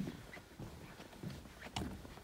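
Footsteps on boardwalk planks at a steady walking pace, a series of short knocks.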